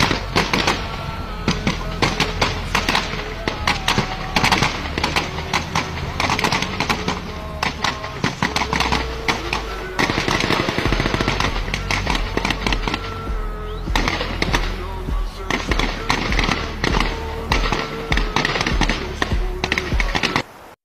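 Music with a heavy bass line and held notes, under dense rapid cracks like gunfire that go on almost without a break, thinning briefly twice.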